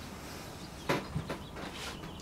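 Hands squeezing and rubbing a soft clay wall, with a few short, soft handling noises about a second in.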